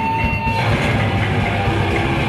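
Loud live heavy rock band playing: distorted guitar and bass with drums, dense and rumbling in the low end. A held high note stops about half a second in.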